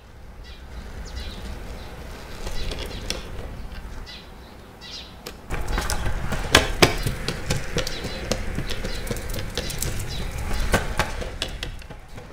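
Outdoor ambience with faint bird chirps. About five and a half seconds in, longboard wheels start rolling over a concrete sidewalk: a low rumble broken by sharp clacks.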